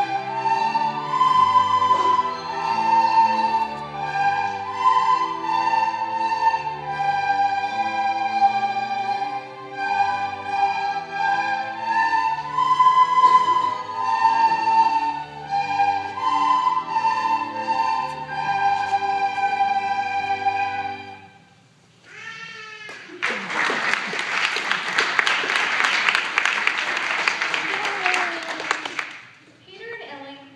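A children's recorder ensemble plays a slow melody over a backing track with low bass notes. The music ends about 21 seconds in, and an audience applauds loudly to the end.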